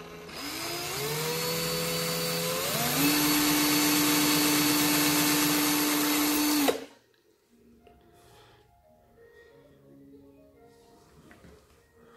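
Cordless drill motor spinning a wire in its chuck to wind a Clapton coil's fine wrap wire around a 24-gauge core. It starts slowly and speeds up in two steps to a steady high whine, then stops abruptly about seven seconds in.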